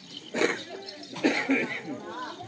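A person's voice: two loud, short, rough vocal bursts about a second apart, like coughs, with some speech around them.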